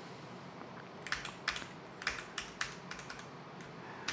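Keystrokes on a mechanical computer keyboard: quiet for the first second, then a run of about a dozen separate key clicks, unevenly spaced, as keys such as the arrow keys are tapped.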